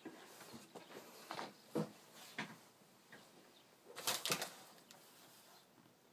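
Faint scattered knocks and rustles of a person getting up from a leather office chair and moving about a small room, with a louder cluster of knocks about four seconds in.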